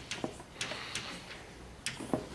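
Chalk writing on a blackboard: a series of short, sharp ticks and taps as the chalk strikes and scrapes the board in quick strokes.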